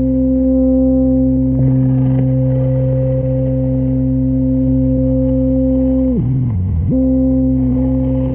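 Lo-fi ambient tape-loop music played from cassette: a sustained drone held on steady notes. About six seconds in, the pitch sags sharply and recovers within a second.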